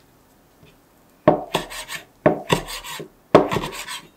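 Large kitchen knife chopping a rolled bundle of leaves on a cutting board. After about a second of quiet come three bouts of chopping, each starting with a sharp knock on the board and trailing into quick scraping strokes.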